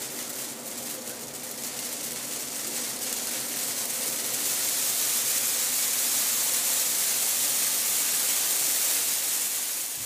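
A dry Christmas tree burning fast, its flames making a steady rushing hiss that grows louder over the first five seconds or so and then holds.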